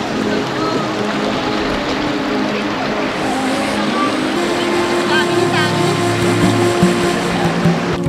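Background music laid over the steady rush of a shallow stream running over rocks and a small weir, with a few faint voices.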